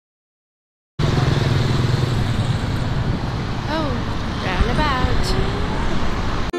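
Road traffic: cars passing with engine and tyre noise, cutting in suddenly about a second in after silence, with people's voices faintly in the background.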